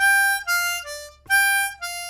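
C diatonic harmonica playing a falling three-note triplet figure, 6 blow, 5 draw, 4 draw (G, F, D), twice in a row as clean single notes. The first note of each group is held a little longer than the other two.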